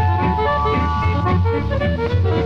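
Instrumental break of a late-1940s country swing band recording, with sustained melody notes over a steady stepping bass line.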